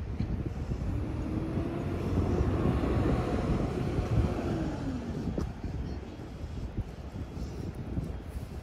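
A vehicle passing by: its engine tone swells, then drops in pitch and fades as it goes past, over a low rumble of wind on the microphone.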